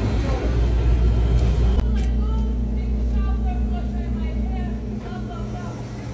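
Steady low hum of shop refrigeration machinery, such as a display freezer or a rolled-ice-cream cold plate, with a light click about two seconds in and faint voices in the background.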